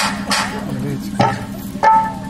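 Live stage sound through a PA system: a steady electrical hum and hiss, a few sharp drum-like strikes near the start, and a short held musical note near the end.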